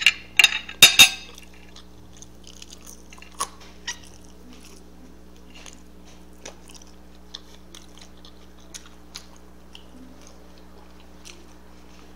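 Close-up eating sounds: a few sharp clicks in the first second, then soft, scattered mouth clicks of chewing a french fry, over a steady low electrical hum.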